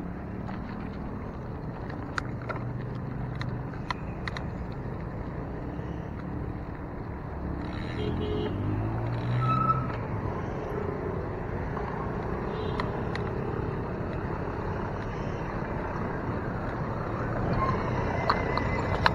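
Wind and road noise on a camera mounted to a moving bicycle, with motor traffic running nearby and a few sharp clicks from the bike. About eight seconds in, a vehicle engine rises in pitch as it accelerates.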